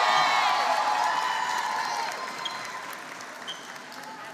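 Audience clapping and cheering for a graduate, with a long held shout in the first two seconds, the whole dying away steadily.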